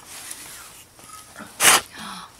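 Soft rustling as a gift is drawn out of a fabric gift bag, then a short, sharp hissing burst about one and a half seconds in.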